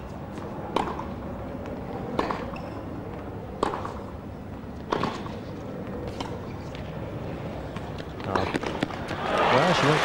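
Tennis ball struck back and forth by rackets in a baseline rally, sharp pops about every second and a half, over a low hum of arena crowd. Near the end, as the point finishes, the crowd breaks into applause.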